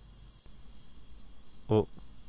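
Faint, steady chirring of crickets as night-time ambience.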